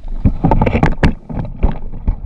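A cluster of irregular knocks, bumps and rubbing from a handheld action camera being moved and handled aboard a small boat at sea. A low rumble of wind and water runs underneath.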